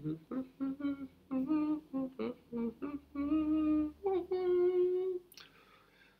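A man humming a wordless tune under his breath: a quick run of short notes, then two longer held notes, breaking off about five seconds in.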